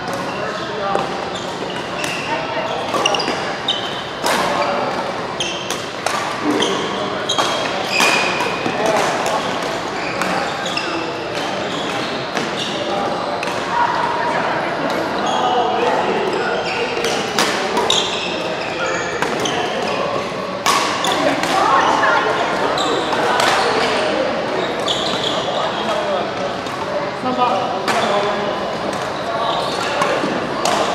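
Badminton rackets hitting a shuttlecock during doubles rallies: sharp clicks at irregular intervals, echoing in a large indoor hall, over a steady background of voices.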